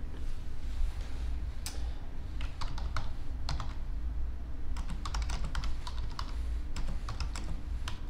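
Keystrokes on a computer keyboard, typing a short phrase in a few irregular runs with pauses between, over a steady low hum.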